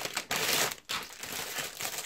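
Thin plastic packaging crinkling and rustling as it is handled and opened. It is louder for the first second or so, then softer.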